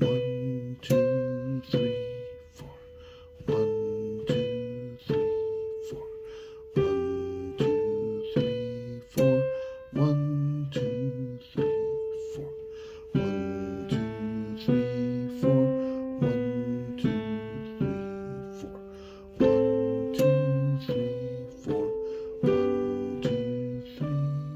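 Digital piano playing a slow beginner piece with both hands: a right-hand melody in G position above lower left-hand notes. The notes come about one or two a second, each struck and left to fade.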